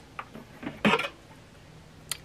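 Metal cooking pot of a triple slow cooker being lifted out of its base, with a few light clicks and one louder clatter about a second in.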